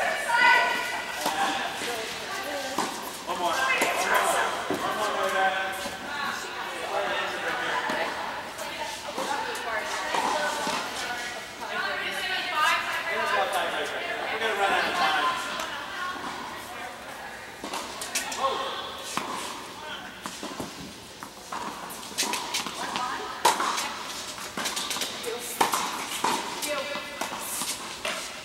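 Voices talking in an echoing indoor tennis hall, with sharp pops of tennis balls struck by rackets now and then, more of them in the second half.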